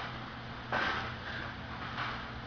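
A man exhales hard once, about two-thirds of a second in, with the effort of pressing a barbell overhead, over a steady low hum.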